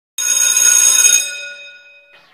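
Electric school bell ringing loudly for about a second, then its ring dying away.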